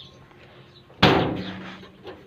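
A door slamming shut about a second in: one sharp, loud bang that rings on and fades away over about a second.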